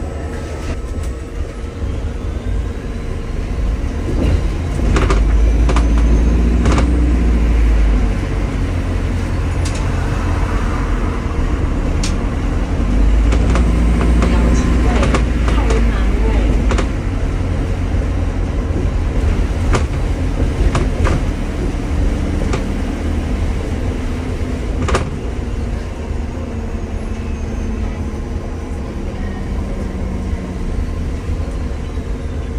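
Interior noise on the upper deck of a moving double-decker bus: a steady low rumble of engine and road that grows louder twice, about five and about thirteen seconds in. Scattered short knocks and rattles run through it.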